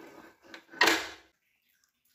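Handling noise at a stand mixer's stainless steel bowl, ending about a second in with one short, loud scraping clunk as the bowl or tilt-head is moved.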